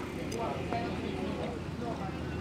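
Quiet outdoor background: a steady low rumble with faint distant voices, and one soft click about a third of a second in.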